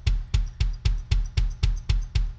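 Bass drum strokes from a Roland electronic drum kit, the beater driven by a single foot on a kick pedal played heel-up. The strokes come at an even pace of about four a second, each a low thump with a sharp attack.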